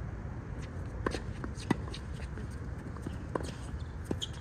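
Tennis ball struck by rackets several times in a doubles rally, as sharp pops, the loudest a little under two seconds in. Between the shots, players' shoes scuff on the hard court.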